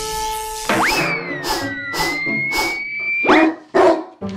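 Held music notes break off under a cartoon sound effect: a quick rising slide-whistle 'boing' and long gliding whistle tones. Dog barks come about twice a second over it, and a second rising whistle sweeps up near the end.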